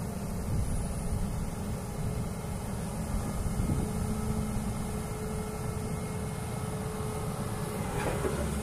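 Atlas 160W wheeled excavator's diesel engine running steadily under hydraulic load as the arm curls in and the upper structure slews, with a thin steady whine joining about halfway through.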